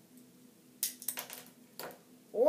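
Small plastic toy parts clicking and rattling as a hand-held Kinder Joy ring launcher is fitted back together and handled: a quick cluster of clicks a little under a second in, and one more click near the end.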